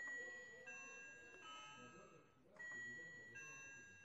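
Faint electronic three-note chime, played twice, standing in for the school bell ringing for the end of class.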